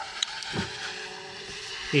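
A couple of faint clicks as a mounting bracket is fitted onto the lip of a plastic solar panel console, over a faint steady hum.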